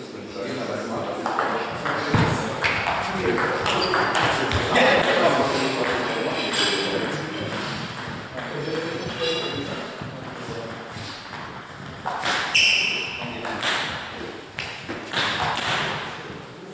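Table tennis rally: a plastic ball clicking sharply off the table and the rubber-faced bats in quick succession, with players' voices and a loud call between points.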